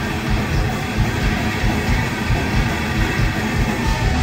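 A live thrash metal band playing loudly: distorted electric guitars and bass over fast, driving drums, heard through a club PA.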